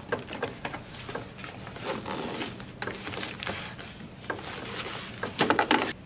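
Fabric cover of a Graco Extend2Fit car seat being pulled off its plastic shell: irregular rustling and swishing with light clicks as the fabric and its edges slide over the plastic, a little louder near the end.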